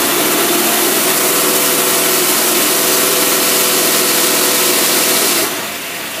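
Engine fed by a Predator carburetor running hard at steady high revs under load on a test stand. Its sound drops suddenly about five and a half seconds in as it comes off the pull.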